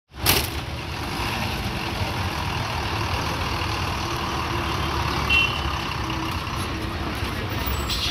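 Diesel engine of a red MSRTC state transport bus running steadily, a low rumble. The audio opens with a sudden knock, and a brief high-pitched beep sounds about five seconds in.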